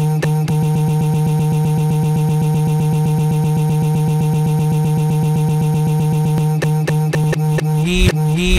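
A song in the edjing DJ app caught in a very short beat loop: a tiny slice of the track repeats about eight times a second as an even stutter over a held low note. Near the end the loop lets go and the track plays on normally.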